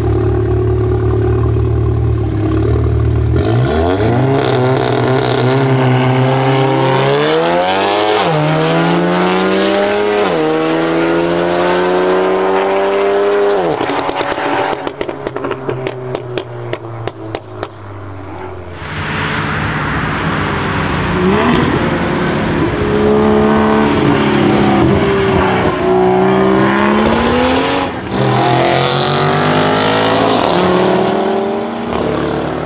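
Big-turbo BMW M135i's turbocharged 3.0-litre straight-six, through a custom iPE valved exhaust, held at steady launch revs, then launching and accelerating hard with two quick upshifts. Sharp exhaust crackles follow as the revs fall away. Later comes another loud stretch of hard acceleration with rising and falling revs.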